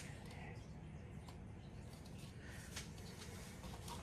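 Faint handling sounds of a plastic paint cup being picked up, a few light clicks and taps, over a steady low room hum.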